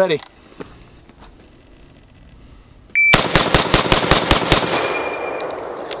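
A shot-timer beeps about three seconds in, then an M1 Garand in .30-06 fires its eight-round clip as fast as the trigger can be worked, about five shots a second. The empty en-bloc clip ejects with a brief metallic ping about a second after the last shot.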